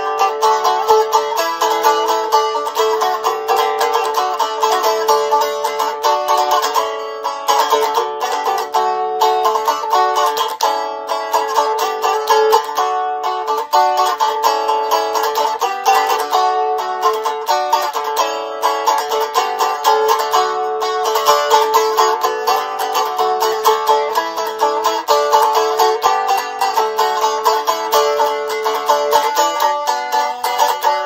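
A homemade 16-fret strum stick–dulcimer hybrid built from scrap wood, strummed quickly in a continuous tune, with a steady drone note ringing under the melody.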